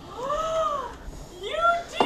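A woman's high-pitched cry of surprise: two drawn-out calls, the first rising and falling, the second starting about a second and a half in and rising.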